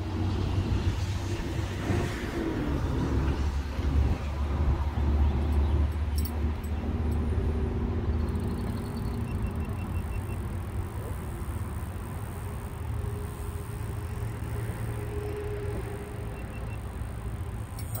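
Steady road traffic noise with a deep, continuous rumble underneath.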